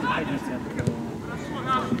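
A man's voice at a football match, calling out near the end, over fainter voices. One short knock comes about a second in.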